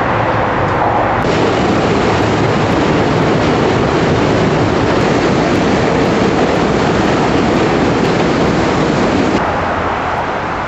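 New York City subway train running past on the Williamsburg Bridge's steel track deck, a loud steady noise of wheels on rails. It starts abruptly about a second in and drops away sharply just before the end.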